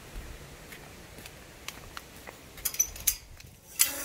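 Light steps on a concrete path, then sharp metal clinks about two and a half seconds in and a louder rattle near the end as the latch of a galvanized chain-link fence gate is handled.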